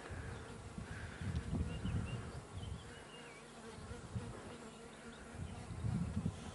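A steady faint buzzing hum with irregular low rumbling underneath, and a few faint high chirps about two to three seconds in.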